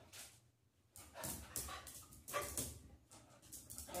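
Dog vocalizing: several short, high calls start about a second in, with quiet before them.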